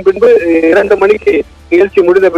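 Speech: a person talking at a podium over a hall's sound system, with a short pause about one and a half seconds in.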